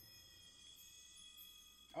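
Faint background music from the anime episode: a few thin, steady high tones held throughout, very quiet.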